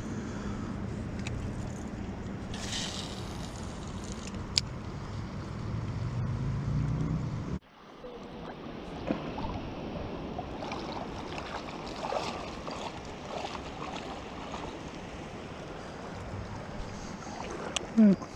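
Wind rumbling on the microphone over river water, with a single sharp click about four and a half seconds in. The sound cuts off abruptly about eight seconds in and resumes as water sloshing with light, scattered splashes.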